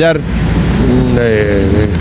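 Road traffic on a busy avenue: a steady low rumble of passing cars, under a man's voice that trails off at the start and comes back in a drawn-out sound in the second half.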